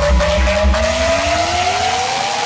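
Uptempo hardcore electronic music: the fast kick drums drop out under a second in, leaving a synth riser climbing steadily in pitch as a build-up toward the next drop.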